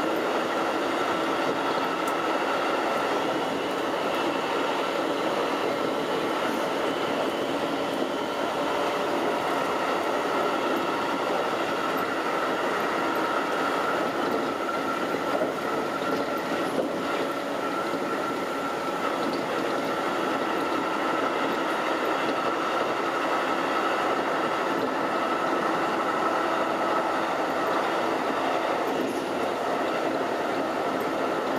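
Keikyu 2100-series electric train running at speed, heard from inside at the front of the car: a steady rumble of wheels on rail with a constant whine over it.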